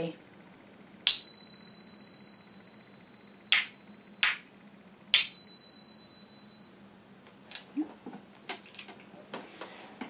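A pair of Turkish-style finger cymbals (zills), her Turkish Delights, with a deep dome and curved rim, struck together by hand. A bright, high ring comes about a second in and fades slowly. Two shorter clangs follow, then another long ring, and then light clicks as the cymbals are handled.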